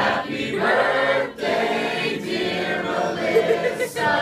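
Men and women singing a birthday song together without accompaniment, in long held notes with brief breaks between phrases.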